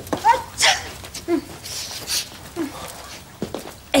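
A woman with a cold sniffling and blowing her nose into a tissue, with short nasal vocal noises between.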